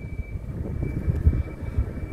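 Low wind and road rumble on the microphone of a camera moving along a road, with a faint steady high whine.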